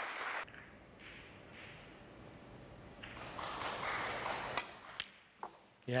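Snooker balls clicking: several sharp, separate knocks of cue tip on cue ball and balls striking one another near the end, after a soft swell of arena crowd noise in the middle.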